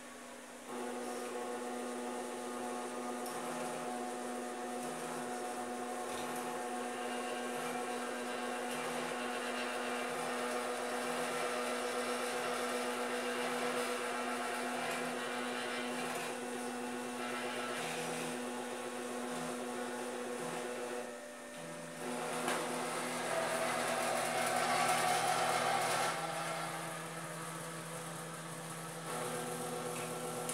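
Electric motors of a homemade painting robot arm whirring steadily as it moves a paint roller against a wall. The whir dips briefly about two-thirds of the way in, then returns louder with a lower tone added.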